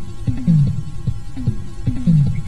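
Low bass line opening an instrumental rock track: a short figure of regular pulses repeating, with a falling pitch slide about every one and a half seconds.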